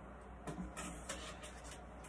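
Wet cooked penne dropped from a strainer into a frying pan of hot chili oil, sizzling in about four short bursts.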